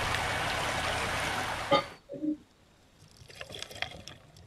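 Shallow creek water running and splashing over stones around spawning pink salmon, which cuts off abruptly about two seconds in with a sharp click. It is followed by a brief low tone, then faint scattered clicks in near quiet.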